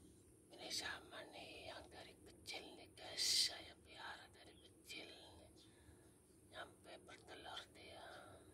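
A person whispering in short phrases, with a loud hissing sibilant a little over three seconds in.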